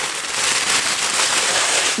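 Packaging being handled close to the microphone: a dense, continuous crinkling and crackling.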